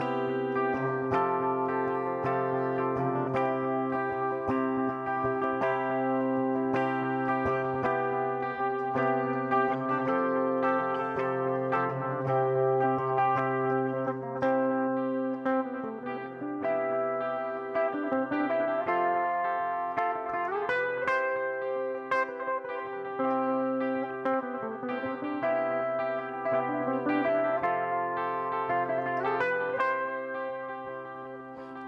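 Solo electric guitar playing sustained, ringing picked notes and chords, with notes gliding in pitch about two-thirds of the way through.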